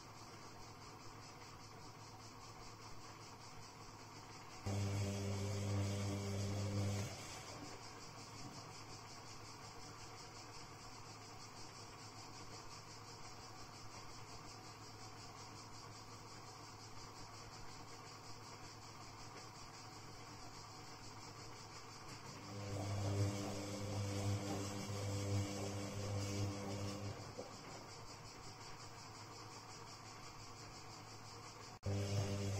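Castor C314 front-loading washing machine's drum motor humming in two spells, about two seconds early on and about four and a half seconds near the end, with a long quiet pause between. This on-off turning of the drum is the tumbling action of a cotton wash cycle.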